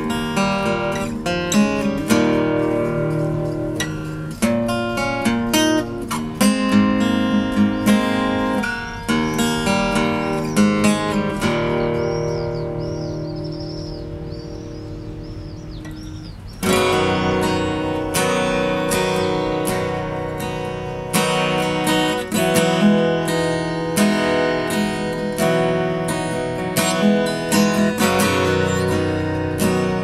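Takamine AJ250 jumbo acoustic guitar with a solid spruce top and solid flamed maple back and sides, played fingerstyle: a run of picked notes and chords. About eleven seconds in, one chord is left to ring out for about five seconds, then the playing picks up again.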